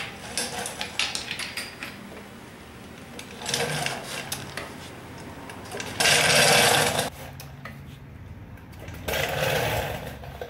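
A limited-slip Ford 8.8 rear axle being turned over slowly by hand at its pinion flange. A few clicks, then three rough mechanical bursts about a second long as the gears and wheel turn in strokes; the middle burst is the loudest.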